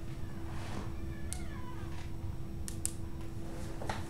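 A short animal-like cry that slides down in pitch about a second in, over a steady hum, with a few sharp clicks.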